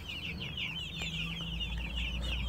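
A brood of newly hatched chicks peeping, many short high chirps overlapping in a continuous chatter, with a faint low hum underneath.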